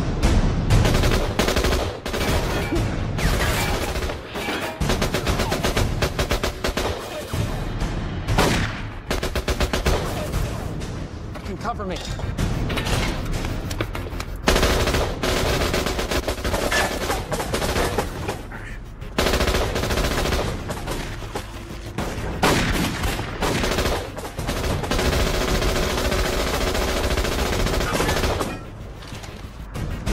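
Sustained gunfire from automatic weapons, shots coming in rapid bursts with brief lulls, over a film music score.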